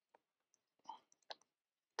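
Near silence with three faint, short clicks.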